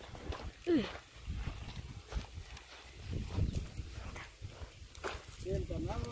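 Steps and crutch tips thudding irregularly on dry, straw-strewn dirt. There is a short falling call about a second in and a longer wavering call near the end.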